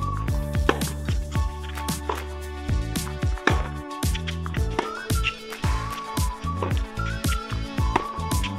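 Background music with a steady beat: deep bass drum hits under sustained bass notes, with a short melodic figure that recurs every few seconds.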